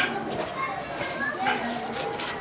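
Background voices of children playing, with scattered chatter and no clear words.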